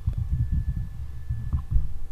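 Keyboard typing heard as a quick run of low, muffled thumps through the desk into the microphone, as a new offset value is entered.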